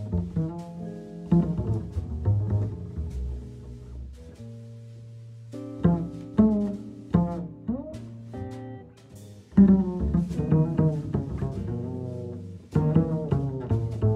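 Slow jazz ballad with plucked upright bass prominent, single notes ringing and fading, and a quieter held low note about four seconds in.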